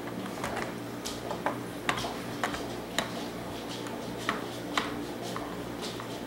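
Plastic pegs clicking into the holes of a Trouble game board: a dozen or so light, sharp clicks, roughly two a second, as a peg is moved along space by space.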